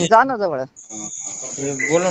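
Voices talking over a recorded phone call, with a steady high-pitched hiss coming in under them a little under a second in.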